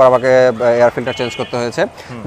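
Speech only: a man talking, with no other distinct sound.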